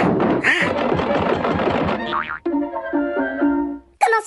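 Cartoon orchestral score with comic sound effects: about two seconds of busy music with short hissy bursts, then a falling glide cut off by a sharp hit, then a few held notes stepping before the sound drops away near the end.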